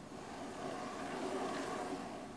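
Engine of a passing vehicle, swelling over about a second and a half and then beginning to fade.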